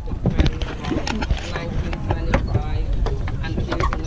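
Wind buffeting an action camera's microphone, a continuous low rumble, with scattered short knocks and snatches of nearby voices.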